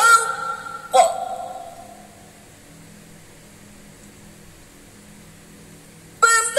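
A young woman's melodic Quran recitation into a microphone: a sung phrase ends right at the start, a short held note about a second in fades out, and then a pause of about four seconds with only a faint low hum before the next phrase.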